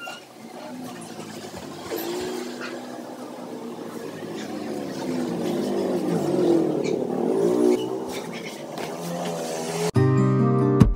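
A motor vehicle's engine passing, growing louder to a peak about six to seven seconds in, then fading.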